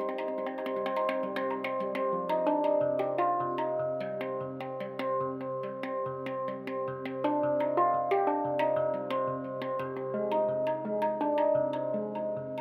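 Steel handpan played by hand: quick finger strikes on its tone fields, each note ringing on and overlapping the next, with a low note pulsing steadily beneath from about three seconds in.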